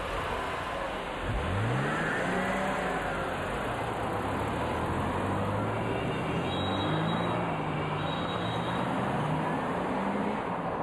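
Car engine revving up about a second in as the car pulls away, then running steadily as it drives off.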